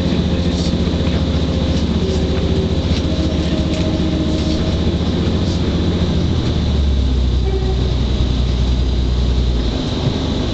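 Class 185 diesel multiple unit heard from inside the carriage, its underfloor Cummins diesel engine running under load as the train pulls away and gathers speed. About two-thirds of the way through, the engine note shifts lower and grows louder.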